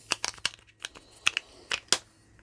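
Small clear plastic battery case for a camera battery being handled, giving a string of light plastic clicks and then a sharper snap near the end as its lid clicks shut.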